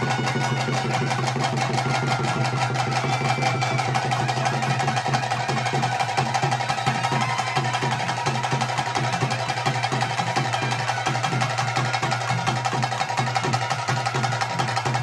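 Traditional ritual music for a bhuta kola: fast, steady drumming under a held, droning wind-instrument melody, going on without a break.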